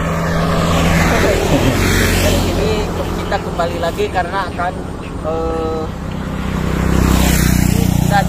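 Small motor scooters passing close by on a paved road, their engines humming low throughout: one goes by about two seconds in and another swells up near the end. Short vocal sounds come in between, in the middle.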